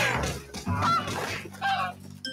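Small cartoon birds giving short honking squawks as they fly off, one call about a second in and another near the end. A loud sound fades out at the start.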